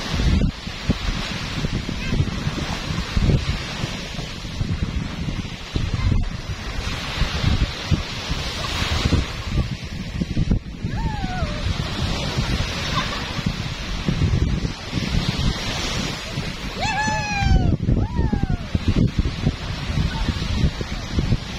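Small waves breaking and washing up a sandy shore, the surf hiss swelling and easing every several seconds, with wind buffeting the microphone.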